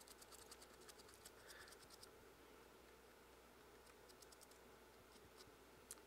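Faint, quick scratching of a paintbrush's bristles dry-brushing paint over the textured ridges of a primed foam claw, in short strokes, with a sharper click just before the end.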